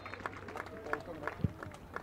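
Faint open-air football-pitch ambience with scattered distant voices and shouts, and a few light knocks.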